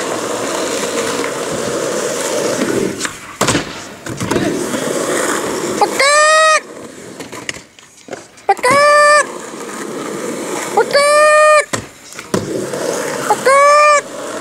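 Skateboard wheels rolling on asphalt, with a few sharp clacks of the board. In the second half, four loud held tones of one steady pitch, each about half a second long, come roughly every two and a half seconds.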